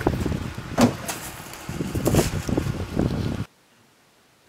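A scuffle against a car: handling noise and several sharp knocks of bodies and hands against the car door and body. It cuts off suddenly near the end.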